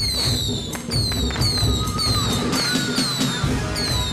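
Temple ritual percussion music: a steady beat of drums with a bright metallic strike ringing about twice a second.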